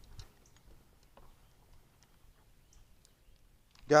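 Faint, irregular clicks from a Zebco 33 spincast reel and rod being worked over a quiet background.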